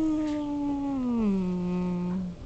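A person's long hummed 'mmm', held level and then sliding down in pitch about a second in, where it is held lower.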